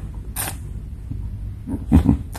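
A pause in a man's talk with a low steady hum in the background. About half a second in there is one short breathy sound from the speaker, and a brief low vocal sound starts near the end.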